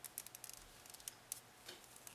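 Faint, irregular small clicks and scratches of a crochet hook and yarn being worked by hand while stitching a half double crochet.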